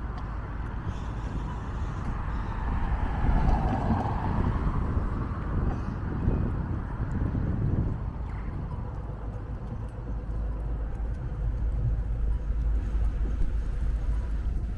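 City street traffic: a steady low rumble of road vehicles, with one louder pass about four seconds in.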